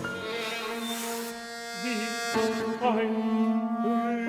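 A contemporary chamber ensemble playing held chords, with bowed strings and piano. The harmony shifts abruptly twice, and some string notes slide and waver in pitch.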